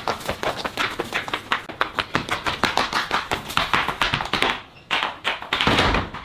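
Rapid running footsteps on a concrete lane: quick, sharp slaps several times a second, with a louder scuffing burst near the end.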